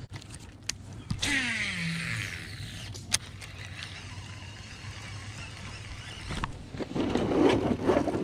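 Baitcasting reel spool whirring out on a cast about a second in, its whine falling in pitch as the spool slows. A sharp click follows, then quieter reel and handling noise, with a louder rumble of handling noise near the end.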